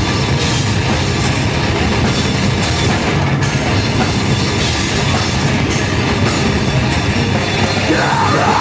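Live metalcore band playing loud and without a break: heavily distorted electric guitars over a pounding drum kit.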